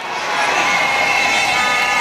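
An audience cheering and shouting, swelling over about the first half-second and then holding steady.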